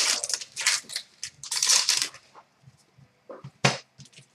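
A trading-card pack wrapper crinkling and cards being handled in short rustling bursts, then two sharp clicks near the end as cards are set down on a glass counter.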